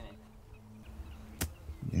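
Quiet background with a faint low steady hum and a single sharp click about one and a half seconds in.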